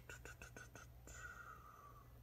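Near silence: a faint steady hum, with a few faint ticks in the first second as a plastic DVD case is handled, and a faint whispered murmur in the second half.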